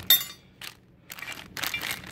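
A plastic zip-lock bag of metal bolts and washers being handled: a sharp clink of hardware at the start, then plastic crinkling near the end.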